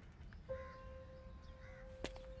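A quiet moment: a single held note of background score enters about half a second in, over faint crow caws, twice.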